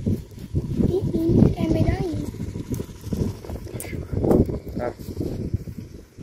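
People's voices talking, mixed with scattered short knocks and rustles.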